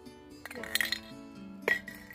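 Background music, with metallic clinks from an aerosol spray paint can being handled about half a second in and one sharp knock shortly before the end.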